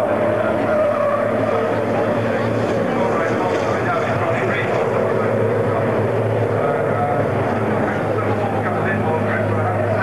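Racing trucks' diesel engines running steadily out on the circuit, heard from the spectator bank, with voices mixed in.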